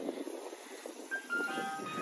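Ice cream truck's chime tune playing faintly, its notes coming in about a second in.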